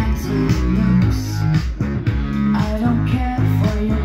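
Rock music with guitar and bass, played from a vinyl record on a Pioneer CEC BD-2000 belt-drive turntable.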